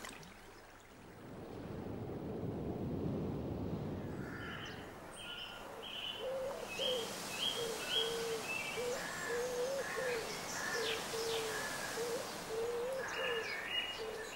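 Birds calling: a run of low cooing notes repeated every half second or so, with higher short chirps from other birds over them, beginning a few seconds in after a low rushing noise.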